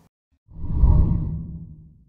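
A deep whoosh sound effect on an animated outro graphic. It swells in about half a second in and fades away over the next second and a half.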